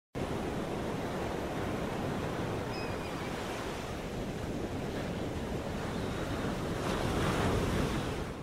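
Sea surf washing against a rocky shore, a steady rush that swells a little near the end.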